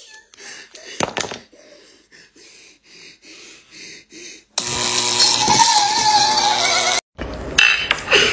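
A girl crying: faint sobbing at first, then about halfway through a loud, harsh wail with a wavering pitch that lasts about two seconds and cuts off suddenly.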